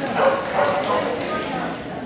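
A dog barking a few times in short, sharp barks over the murmur of people talking in a large hall.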